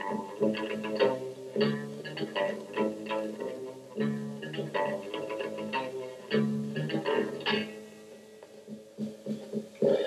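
Live amateur rock band playing: electric guitar and bass on a riff with sharp, rhythmic attacks, thinning out near the end and closing on one loud final hit.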